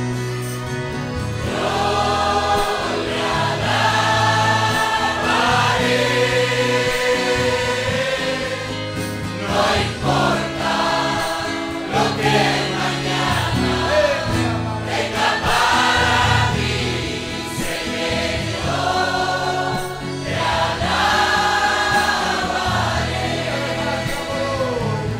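Congregation singing a hymn together in phrases of a few seconds, over instrumental accompaniment with held bass notes.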